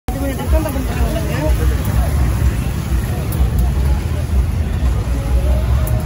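Outdoor street ambience: a steady low rumble with faint voices of people talking in the background, loudest in the first two seconds and again near the end.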